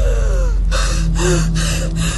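A woman gasping for breath: rapid, noisy breaths about three a second, over a steady low hum.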